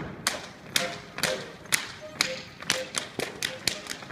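Schuhplattler dancers slapping their thighs and shoe soles with their hands and stamping on a wooden floor, sharp slaps in a steady rhythm of about two a second that come closer together near the end.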